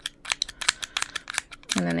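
Small plastic glitter pieces (hollow hearts) sprinkled from the fingers into a plastic tub of loose glitter: a rapid, irregular run of tiny clicks and ticks. Speech comes in near the end.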